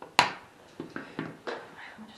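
A sharp knock, then several lighter taps: a phone being handled and set down on a glass tabletop.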